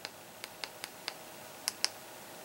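Buttons on an Xfinity XR11 TV remote clicking under a thumb: about seven small, sharp clicks spread over two seconds, the last two, near the end, the loudest.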